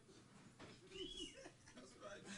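Near silence in the room, with faint, indistinct vocal sounds, including one brief rising-and-falling tone about a second in.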